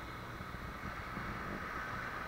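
Small sea waves washing and foaming over sand in shallow surf, a steady wash, with wind buffeting the microphone as a low rumble.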